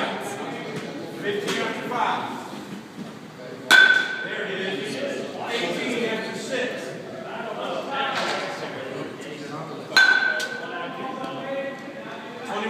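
Two baseballs hit with a metal bat, about six seconds apart, each a sharp ping with a short ring after it.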